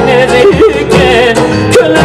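Live Pontic Greek folk music: a man singing an ornamented, wavering melody into a microphone, backed by keyboard and davul drum.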